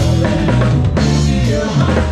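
Live band playing, the drum kit prominent with regular drum hits over a steady bass line and other instruments.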